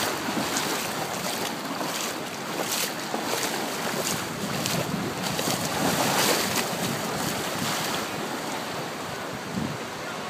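Ocean surf washing and breaking in shallow water, with wind buffeting the microphone.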